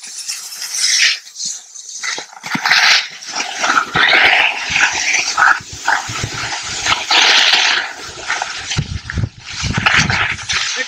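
Skis carving and scraping on snow in a run of quick, short-radius turns, making repeated swishing scrapes. Wind rumbles on the microphone in the second half.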